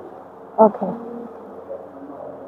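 Steady low electrical hum made of several held tones, with a woman saying "okay" about half a second in.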